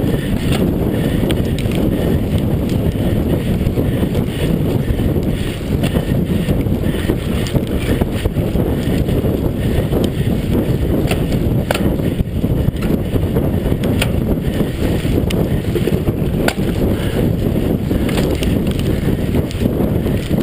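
Steady rumble of wind on the microphone and mountain-bike tyres rolling over a dirt forest trail, with a few sharp rattles as the bike jolts over bumps.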